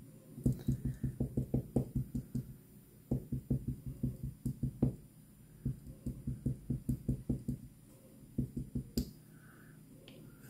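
Small Stampin' Up! ink spot pad dabbed again and again onto a clear stamp on an acrylic block to ink it: quick light taps, about seven a second, in four runs of one to two seconds each.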